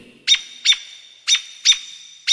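Bird-tweet chirp sound effect in a segment jingle: short high chirps in pairs, about a pair a second, four chirps in all.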